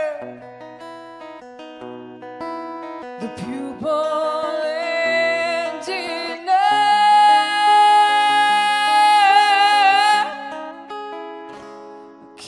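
A woman singing a slow ballad live over acoustic guitar. Soft plucked guitar notes come first; her voice comes in about four seconds in, then holds one long loud note for about four seconds that wavers near its end before falling away to the guitar.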